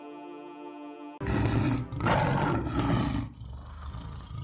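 Soft ambient music cuts off about a second in, replaced by a loud, rough roaring sound effect in two surges lasting about two seconds, which then drops to a lower rumble.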